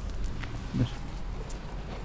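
A cat gives one brief, low mew a little under a second in.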